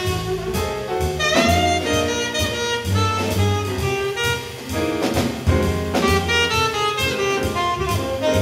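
Jazz saxophone solo over a small combo of piano, bass and drums, the melody line moving freely over a steady swinging rhythm.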